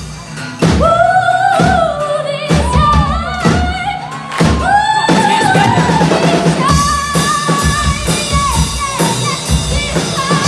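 Live band playing a pop-rock song: a woman sings the lead melody over electric and acoustic guitars, bass guitar and drum kit. A short drop in level right at the start, then the full band comes back in.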